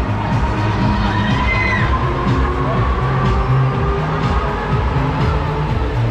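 Loud fairground music with a heavy bass beat from the running Break Dance ride's sound system, with riders shouting and cheering over it in a few short yells.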